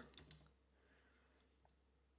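Near silence with a few faint computer keyboard keystrokes near the start, as 'globe' is typed into a search box.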